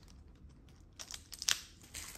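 Fingernails picking at and tearing the plastic shrink wrap on a tarot card deck. It is faint at first, then about a second in comes a quick run of sharp clicks and crinkles.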